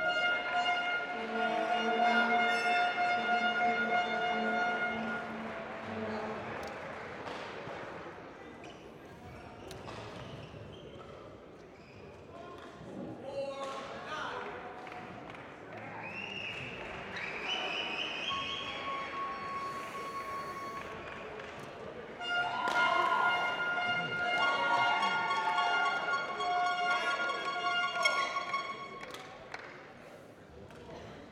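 Sports hall ambience during a break in play: people talking, scattered thuds, and long steady pitched tones, like held music notes, for the first few seconds and again near the end.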